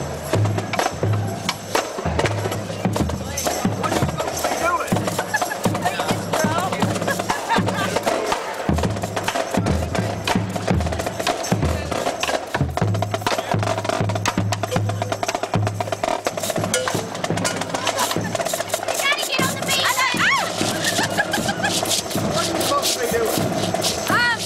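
Drumline of marching snare drums and bass drums playing a fast cadence: dense, rapid snare strokes over repeated deep bass-drum hits.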